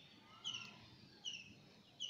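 A small bird chirping faintly in the background: a short, slightly falling call repeated a little more often than once a second, three times.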